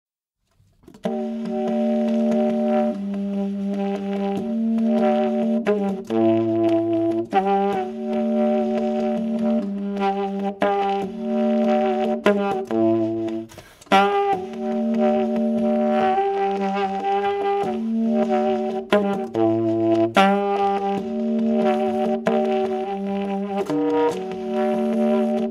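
Recorded jazz track of layered saxophone notes held together in chords, starting about a second in and moving in a repeating pattern that comes round about every six and a half seconds.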